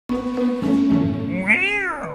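Music with a steady held chord, and about one and a half seconds in a single meow, its pitch rising and then falling, standing in for the logo's lion roar.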